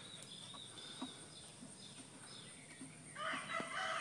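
Faint, high bird chirps, then a loud, drawn-out call from a farm bird, likely a rooster crowing, starting near the end.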